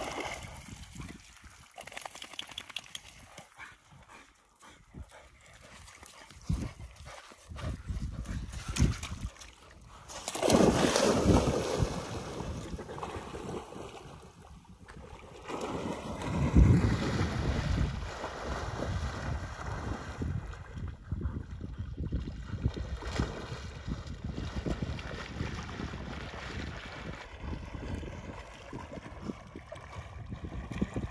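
A dog splashing through river water and swimming while fetching a stick. There are two louder stretches of water noise, about ten and sixteen seconds in.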